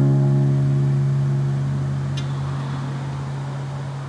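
Hollow-body archtop guitar's last chord ringing out, held and slowly fading with no new notes played.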